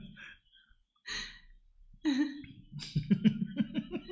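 A man's voice: a short cough about a second in, then laughter in quick, even pulses from about halfway.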